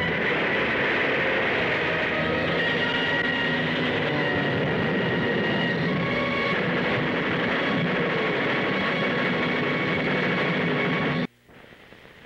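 Loud orchestral film score with long held chords over a dense, noisy roar. It cuts off abruptly near the end, leaving only a faint hiss.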